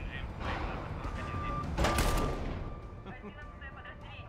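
Film action sound effects of an ambush on a convoy: a rushing noise swells into a loud bang about two seconds in, which dies away slowly. A steady high ringing tone sounds through it.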